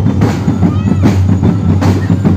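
Marching drum corps playing: bass and snare drums beating a fast, dense rhythm, loud and continuous.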